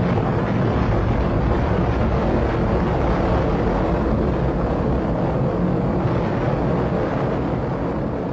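Continuous deep rumble of a nuclear explosion, a dense low noise without any clear tone, easing a little near the end.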